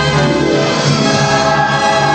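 Orchestral film opening-title music with a choir singing over it, loud and sustained.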